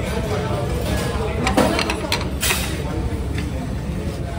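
Restaurant ambience: indistinct voices of people talking over a steady background hum, with a few sharp clinks and knocks, like plates and dishes at the counter, between about one and a half and two and a half seconds in, and one more near the end.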